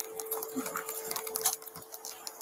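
Body-worn camera microphone picking up irregular scratching and rustling as the wearer walks, with quick uneven clicks from uniform and gear rubbing against the camera, over a faint steady hum.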